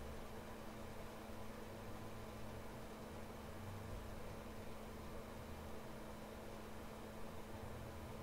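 Quiet room tone: a steady low electrical hum under a faint even hiss, with no distinct sounds.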